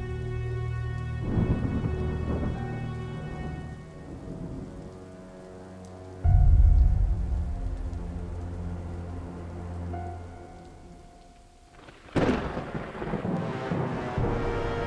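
Thunderstorm sound effect over a soft, sustained music score: rain and rolling thunder, a deep rumble that strikes suddenly about six seconds in and fades slowly, and a loud crash near the end.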